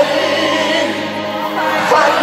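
Live band music from a Persian pop ballad, with held, choir-like tones filling a short gap between the lead singer's lines.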